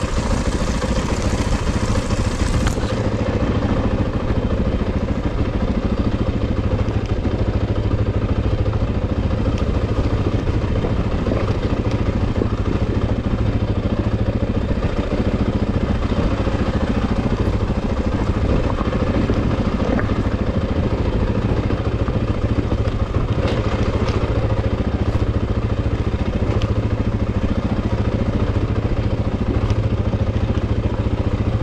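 Off-road vehicle engine running steadily at low revs on a rough downhill trail, with occasional knocks and rattles from the machine over the ground.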